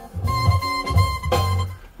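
Music playing back from a DAT tape on a Sony DTC-700 digital audio tape recorder, with a pulsing bass line under a held high note.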